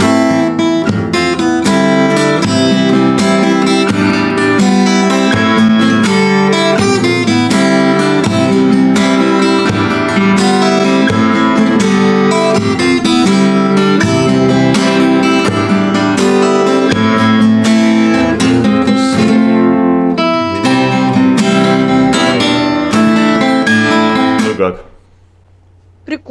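Acoustic guitar playing a solo piece of quick plucked notes, loud and continuous, which stops about a second before the end.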